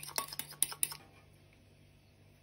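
Metal spoon clinking rapidly against a ceramic bowl while beating an egg-yolk glaze; the clinks stop about halfway through.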